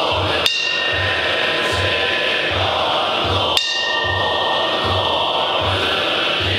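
A metal Buddhist ritual bell struck twice, about three seconds apart, each strike ringing on with clear high tones that fade over a couple of seconds. Beneath it the monks' group chanting goes on over a steady low beat.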